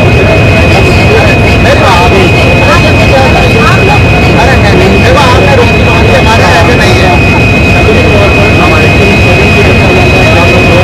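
A stationary railway locomotive running loud and steady alongside, a constant rumble with a high, unchanging whine over it; voices talk underneath.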